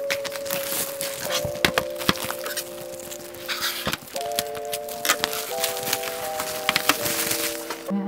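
Background music of slow held chords that change every second or so, with frequent sharp clicks and knocks from a picture frame with a glass front being handled on a wooden tabletop.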